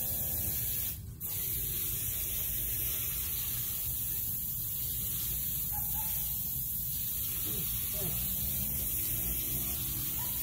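Steady outdoor background noise: a constant high hiss over a low rumble, with a brief dropout about a second in.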